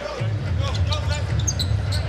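A basketball being dribbled on an arena hardwood floor, with shoe squeaks and crowd noise. A low, steady rumble sets in shortly after the start.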